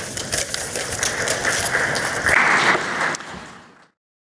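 Audience applauding, a dense patter of clapping that fades away near the end.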